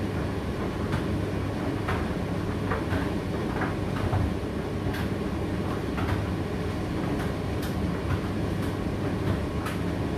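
Indesit IDC8T3 condenser tumble dryer running mid-cycle: a steady low rumble of the motor and turning drum, with irregular light clicks and knocks as the load tumbles.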